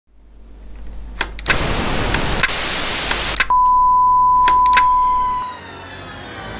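Intro sound effect of TV-style static: a hum builds, then a loud hiss with a few clicks, then a single steady high beep held for about two seconds. The beep gives way to theme music near the end.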